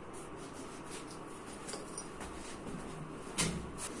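A lifter getting set at a heavily loaded barbell: faint shuffling and a few small clicks, then one short knock about three and a half seconds in as he takes hold of the bar.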